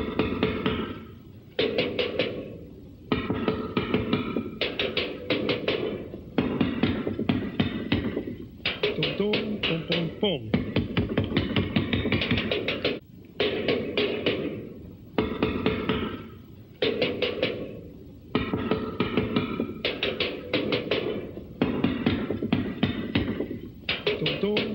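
A drum kit (bass drum, tom-toms and cymbal) beaten rapidly with drumsticks. The fast rolls of strikes come in repeated bursts about every one and a half to two seconds.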